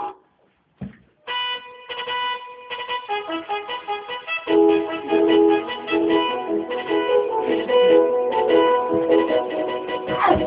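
Keyboard music: after a brief gap and a single knock, a line of short pitched notes starts about a second in, and a lower part joins about halfway through.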